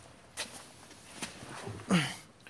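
Faint handling noise from moving about inside a car cabin: a soft rustling swish, then a small click.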